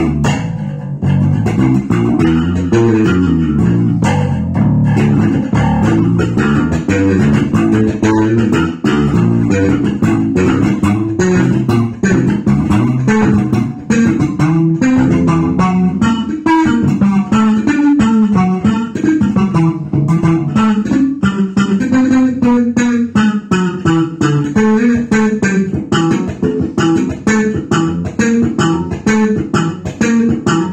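Four-string electric bass guitar played fingerstyle: a continuous, busy jazz-funk bass line of plucked notes.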